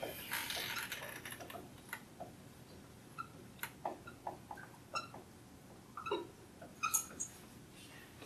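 Dry-erase marker squeaking on a whiteboard while words are written: a faint series of short, irregular squeaks and ticks.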